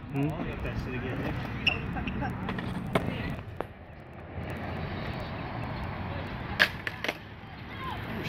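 Skateboarding sounds on concrete. Low voices at first, then a steady rushing noise from about halfway through, and two sharp knocks close together about two-thirds of the way in.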